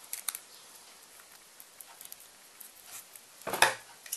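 Faint rustling and small clicks of fingers wrapping a strip of adhesive tape around a twisted silk cord, with one short, louder rustle about three and a half seconds in.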